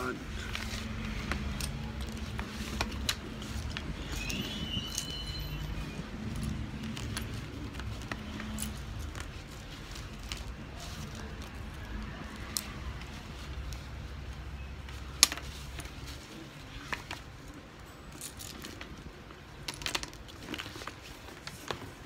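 Small plastic building bricks clicking and clattering as hands rummage through and pick up loose pieces on a wooden table, with sharp clicks scattered throughout. A low steady hum runs underneath and stops about three-quarters of the way through.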